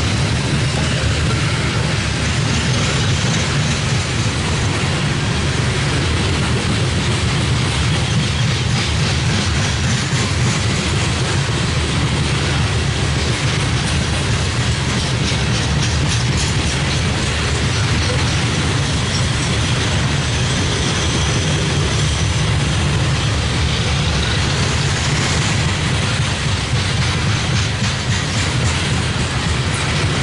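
Loaded coal train's open-top coal cars rolling past: a steady, loud rumble of steel wheels on rail, with faint rhythmic clicks through the middle stretch.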